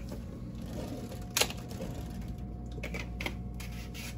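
Small handling clicks on a kitchen counter: one sharp click about a second and a half in, then a few fainter clicks, over a low steady hum.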